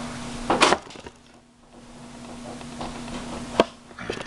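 Handling sounds of a power cord being plugged into a laptop's AC charger adapter: a short scraping rustle about half a second in, then a single sharp click near the end as the plug seats. A faint steady hum runs underneath.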